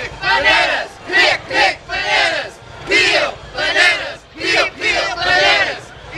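A group of voices shouting a cheer together, in loud rhythmic bursts of syllables about twice a second.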